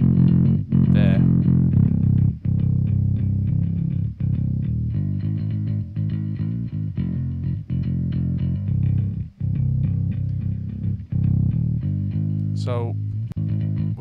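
Electric bass track from a pop-punk song played back in the mix, with rhythmic, heavy low notes and the top end rolled off. A low-mid EQ cut near 250 Hz is in, taming a muddy honk. Near the end a sliding sound falls in pitch.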